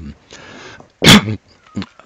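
A man's loud cough about a second in, after a short breath.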